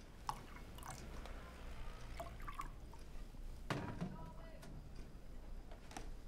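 Quiet clinks of glassware and whiskey being poured, with a few short glassy rings and a duller knock about halfway through.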